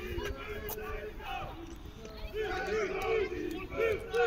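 A group of players shouting short, repeated calls together, a rapid run of shouts picking up about two seconds in.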